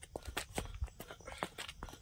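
A person's running footsteps: a quick, regular series of footfalls.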